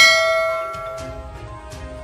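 A struck bell chime rings and slowly fades over about a second and a half, over quiet background music.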